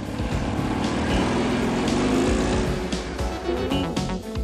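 Renault 4 driving past, its small engine rising in pitch and loudness and then falling away, heard over background music.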